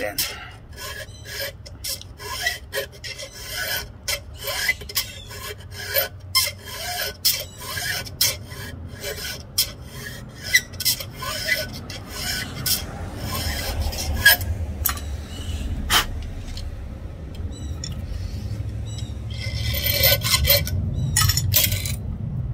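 Flat file being pushed by hand across the cutters of a chainsaw chain to square-file them, with a rasping stroke about every two-thirds of a second. A low rumble builds up underneath in the second half.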